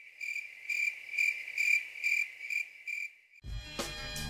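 Cricket chirping, a high trill pulsing about twice a second, which cuts off suddenly near the end.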